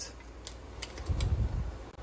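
Faint handling noise from a tape measure being picked up and stood upright against a stack of cups: a few light clicks and a short low rumble about a second in.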